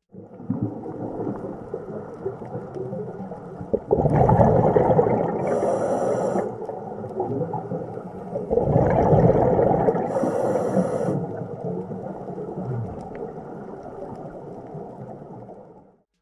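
Underwater recording of a diver breathing through a scuba regulator: two slow breaths about five seconds apart, each a swell of bubbling rumble ending in a brief high hiss, over a steady underwater rumble.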